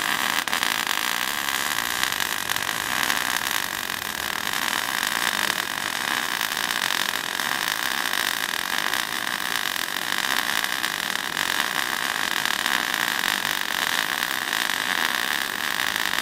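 MIG welding on a rusty steel axle part: the arc gives a continuous crackling hiss at an even level, without a break.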